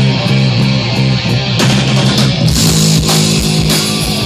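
Live hard rock band playing loud: distorted electric guitars and bass run a repeating riff over drums, with light cymbal ticks at first and a fuller crash of cymbals coming in about a second and a half in.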